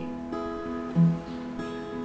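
Acoustic guitar with a capo strumming a C chord in a steady rhythm, with an accented stroke about a second in.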